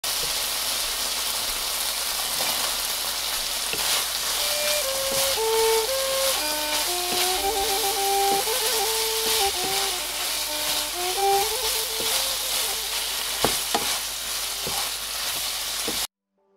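Chicken and green beans stir-frying in red curry paste in a nonstick pan, sizzling steadily, with scattered scrapes and taps from a wooden spatula stirring. A soft melody of single held notes plays over it from about four seconds in to about twelve seconds.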